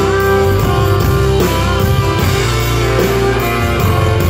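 Live band playing an instrumental guitar break with no singing: a guitar lead with notes bent up and down in pitch over strummed guitars, bass and drums.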